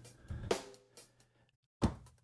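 Four-to-the-floor sampled drum loop played back at normal speed from an Akai MPC Live, fairly quiet, with a few sharp hits, a short gap, and a harder hit just before the end.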